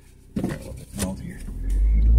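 Low rumble inside a car cabin that swells sharply about one and a half seconds in and stays loud, as the car starts to move off.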